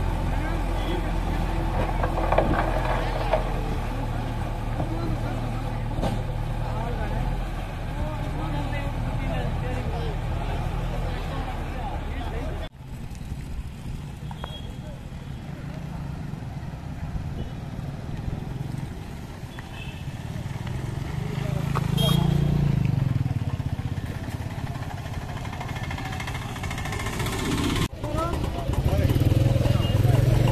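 Backhoe loader's diesel engine running steadily with a low hum while its front bucket pushes gravel into potholes. After a cut, road traffic, a motorcycle and a car driving past, rises in loudness a little past the middle.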